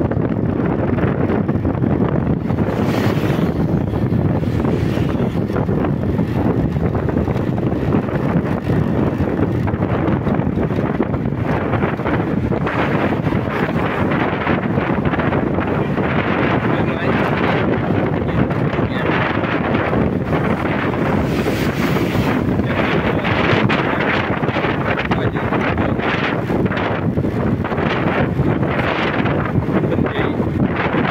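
Steady wind buffeting the microphone of a moving motor scooter, with the scooter's engine and road noise underneath.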